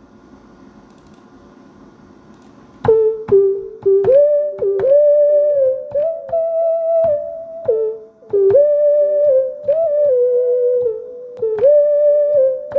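A monophonic synthesizer lead melody played on a MIDI keyboard, single notes that slide in pitch from one to the next. It starts about three seconds in, after a faint steady hum.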